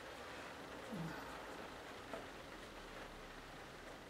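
Faint, steady hiss of rain, with soft strokes of a wide flat brush on watercolour paper.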